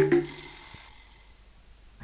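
Commercial-break ident jingle ending: its last pitched note sounds at the start and dies away within about half a second, leaving only a faint hush.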